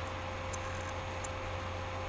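Room tone in a pause between speech: a steady low hum with a thin steady tone above it and an even hiss, and a few faint ticks.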